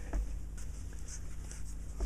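Short, faint scratching strokes of a scalpel blade scraping at the printed numerals on a panel meter's scale plate.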